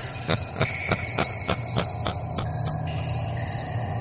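Sound effect of chirping crickets under a regular ticking, about three ticks a second, laid into a radio show's produced intro.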